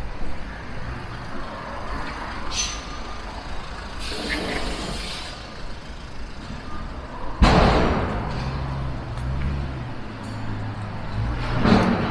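Busy city road traffic with buses and cars, engines running low. Sharp hisses of air released from bus air brakes cut through, the loudest coming suddenly about seven and a half seconds in and fading over a second or so.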